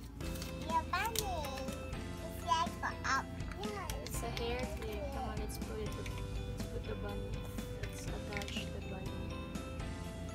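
Background music with held tones, with a young child's voice heard briefly over it in the first few seconds.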